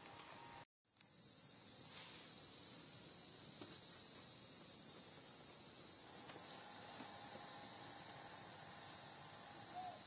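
Steady high-pitched insect chorus droning without a break, cut off completely for a fraction of a second just under a second in before it returns.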